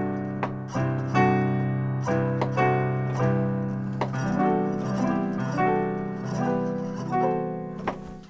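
Piano playing an alternating-triad example: three-note chords moving between C major and D major triad shapes over a held low C major seventh, the sound of a Lydian one chord. A new chord is struck every half second to a second over the sustained bass notes.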